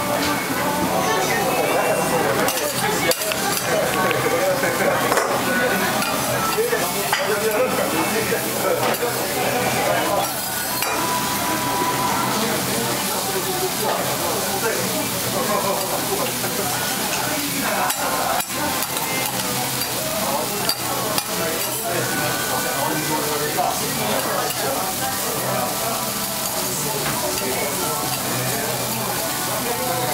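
Noodles sizzling as they fry on a flat steel griddle, with metal spatulas scraping and clinking against the plate as they toss them.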